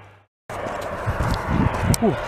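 After a brief gap of silence, footsteps of a person walking on a gravel road, with a steady rustling noise and irregular low thumps.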